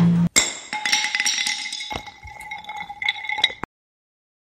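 A low boom dies away just after the start. Then comes a run of light clinking strikes over a steady bell-like ringing chime, a sound effect laid over an animated title card, which cuts off suddenly near the end.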